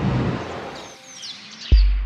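A swelling whoosh as the film's transition, with bird chirps laid over its tail, then about three quarters of the way through a sudden deep bass hit that is the loudest sound and rings on.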